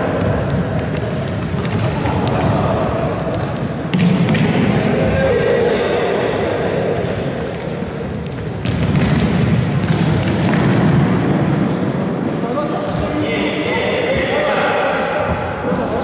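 Indistinct voices of players calling out in a large sports hall, with the thuds of a futsal ball being kicked and bouncing on the wooden floor; loud knocks come about four seconds in and again near nine seconds.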